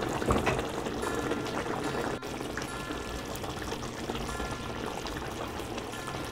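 Thick mutton kofta gravy bubbling at a steady boil in an earthen handi pot, with a continuous run of small bubbling pops.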